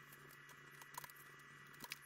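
Faint, sparse clicks of small aluminium parts and hand tools being handled on a workbench, over a steady low hum and hiss. The audio is sped up, so the handling noises come short and high-pitched; two clicks stand out, about a second in and near the end.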